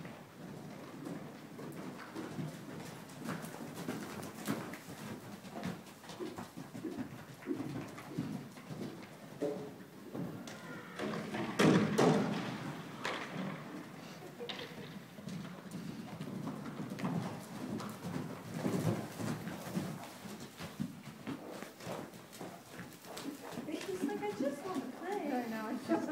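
Horses moving about loose on indoor arena footing: irregular hoof beats and thuds. About twelve seconds in there is a louder, higher burst of sound.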